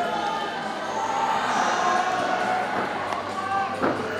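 Thuds of a gymnast's bare feet on a sprung floor exercise mat during a tumbling pass, with one sharp thud near the end, over a murmur of voices in a large hall.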